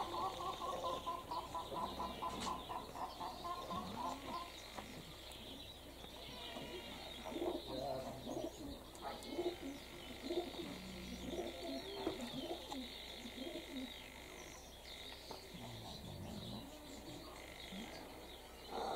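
Domestic pigeons cooing faintly, with a string of low coos through the second half, over faint chirping of other birds.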